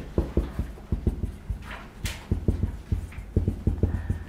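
Marker writing on a whiteboard: an irregular quick run of dull knocks as the marker and hand strike and press on the board, with a couple of brief scratchy strokes about halfway through.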